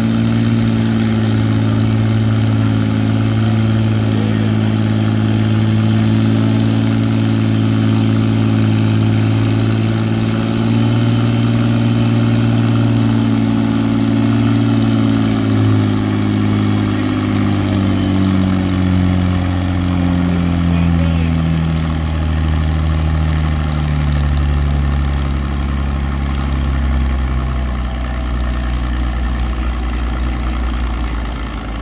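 Farmall tractor engine running hard while pulling a weight-transfer sled. It holds a steady pitch for about the first half, then its pitch falls steadily through the second half as the engine is pulled down under the growing load of the sled.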